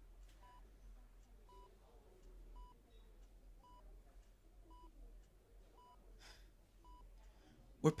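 Hospital bedside patient monitor beeping faintly: short, even electronic beeps about once a second, seven in all.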